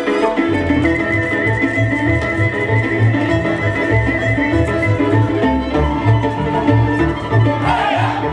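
Fiddle-led Hutsul folk dance music over a steady pulsing bass. The fiddle holds one long high note, then drops to a lower held note about six seconds in, with a wavering slide near the end.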